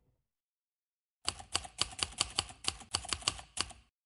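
Typewriter keystroke sound effect: about eleven quick, crisp key strikes at roughly four a second, starting just over a second in and stopping shortly before the end, as title text types out letter by letter.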